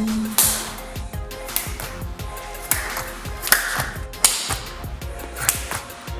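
Explosive clap push-ups on a rubber gym floor: several sharp hand claps and palm slaps at the landings, spaced about a second or more apart, over background music.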